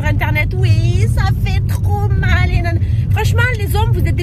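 A woman talking over the steady low rumble of a moving car heard from inside the cabin.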